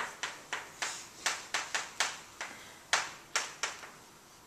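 Chalk writing on a blackboard: a quick run of sharp taps and short scratchy strokes, about four a second, as letters are written.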